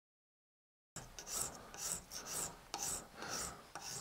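Hand-cut rasp stroking back and forth across a slab of water buffalo horn held in a vise, thinning it down. The strokes start about a second in and come about two a second, each a short, gritty rasp.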